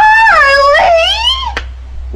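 A woman's long, high-pitched wailing shriek of shock. Its pitch dips, climbs again and falls away over about a second and a half.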